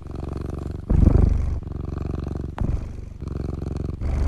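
A cat purring loudly right at the microphone: a low, finely pulsing sound in cycles of about a second each, swelling loudest about a second in, with a brief click partway through.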